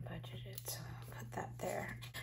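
A woman whispering and murmuring quietly to herself, too soft to make out the words.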